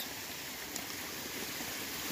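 Creek water running over rocks, a steady even rush.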